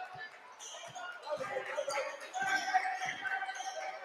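Basketball bouncing a few times on a hardwood gym floor as the ball is dribbled, with crowd chatter filling the hall.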